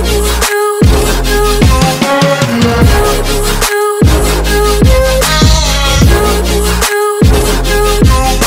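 Background music with a heavy electronic beat and deep bass, the bass dropping out briefly about every three seconds.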